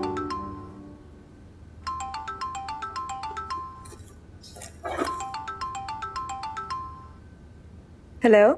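Mobile phone ringing: a marimba-like ringtone plays a phrase of quick plinking notes, repeating about every three seconds. A short swish comes between two of the phrases.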